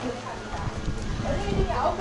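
Chatter of people talking nearby, with irregular low thumps and rumbles in the second half.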